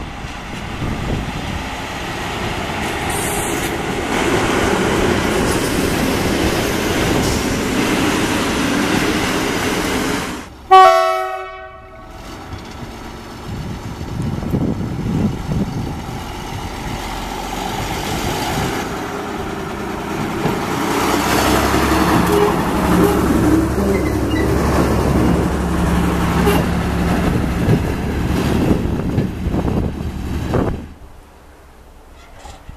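SU42 diesel locomotive hauling a passenger train, running past with a steady rumble; about eleven seconds in, one short, loud blast of a train horn. From about two-thirds of the way through, the diesel engine of a WM15 track motor car runs with a steady low hum as it moves along the track.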